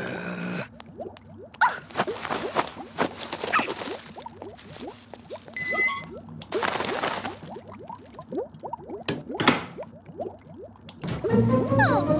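Cartoon score of quick rising pitch glides, several a second, broken by a few short whooshing bursts of noise.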